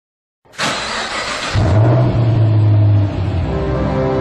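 End-of-video music sting: a sudden hissing whoosh about half a second in, then a loud deep drone, and from about three and a half seconds held musical chords.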